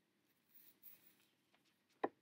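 Near silence, with faint rustling of the album's card pages being handled about half a second in.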